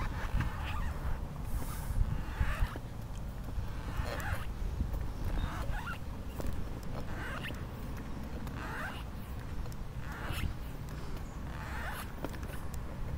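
Manual wheelchair rolling along a concrete sidewalk: a steady low rumble, with a short rasping sound about every second and a half as it is pushed along.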